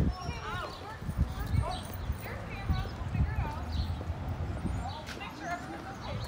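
Outdoor street ambience of bystanders talking at a distance, with irregular low thumps of footsteps and handling on a phone microphone as it is carried along.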